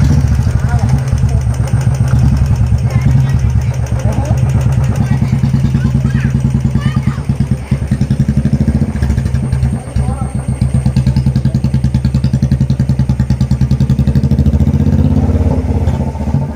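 Royal Enfield motorcycle engine running loud with an even, rapid beat as the bike pulls away and rides off.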